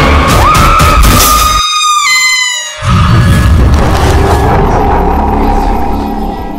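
Horror-trailer score: loud deep booming hits under a high held tone that glides up about half a second in and drops in pitch near two seconds, while the bass cuts out for about a second; then low rumbling music that fades toward the end.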